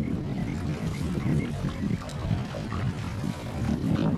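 Wind buffeting an outdoor microphone: an uneven low rumble that rises and falls.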